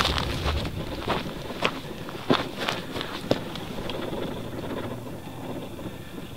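Footsteps on dry, stony ground, irregular short scuffs about every half second, mixed with camera handling noise and a little wind on the microphone.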